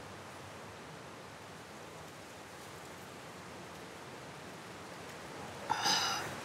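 Faint, steady background hiss of outdoor ambience. Just before the end comes a short breathy burst, like a sharp exhale.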